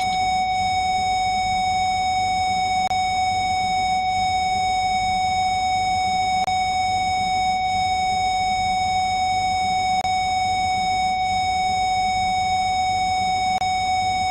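A single steady electronic beep tone, held without change, with faint clicks about every three and a half seconds.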